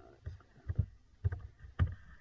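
A handful of short, sharp clicks with low thuds: computer keyboard keystrokes and mouse clicks while editing code.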